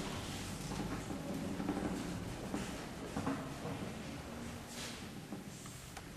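Faint handling noise as a glass test tube is fitted and clamped into the metal clamp of a laboratory stand: a few light knocks and rubbing over steady room noise.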